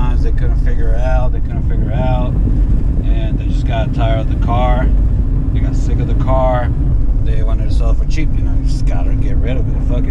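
A man talking over the steady low rumble of a car being driven, engine and road noise heard from inside the cabin.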